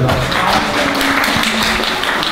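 Many hands clapping, a dense patter of claps, with a man's voice over it.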